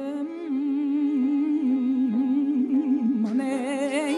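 Male mugham singer holding a long ornamented vocal line in Segah mode, the pitch wavering in fast trills (tahrir), over steady held notes from the accompanying instruments. A bright high shimmer joins near the end.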